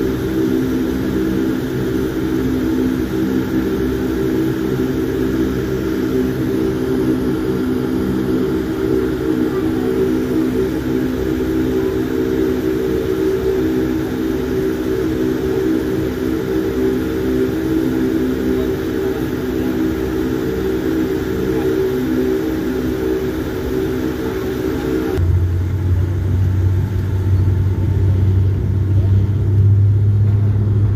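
Steady, loud aircraft noise during a runway roll on the main landing gear: a droning mix of engine and rolling noise with several held tones, which about 25 seconds in changes abruptly to a deeper, steady hum.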